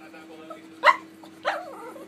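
Small Shih Tzu-type dog giving two short barks, a little over half a second apart.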